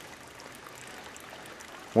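Water from a 12-volt-pump-fed shower hose running steadily.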